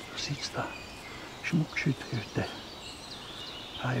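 A series of short, low calls from an animal at the pond, about six in the first two and a half seconds, with small birds chirping faintly high above.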